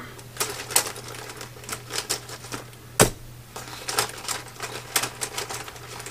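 Plastic marker pens and a ballpoint pen clicking and clattering as they are set down one after another on a planner page on a desk, with one sharp click about three seconds in.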